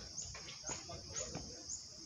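Insects buzzing steadily in the trees, with a short high chirp repeating about twice a second, over faint taps.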